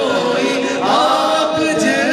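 A man singing a naat unaccompanied into a microphone, with other voices singing along in a drawn-out, chant-like melody.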